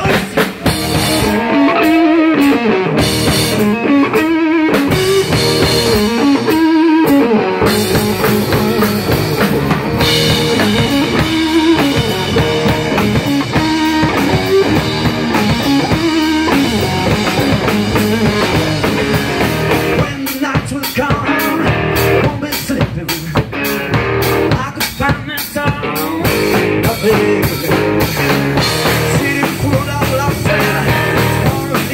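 Live rock band playing loud, with guitar and a drum kit keeping a steady beat: the instrumental opening of a song, before the vocals come in.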